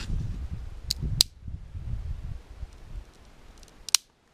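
A dry spruce stick scraped hard against the rough edge of a rock: a coarse rubbing for about the first second, broken by two sharp cracks of the wood. Then quieter handling, and one sharp snap near the end.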